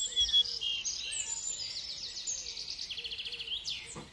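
Small songbird singing in quick high-pitched trills and chirps, with a louder chirp about a third of a second in. The song cuts off abruptly at the end.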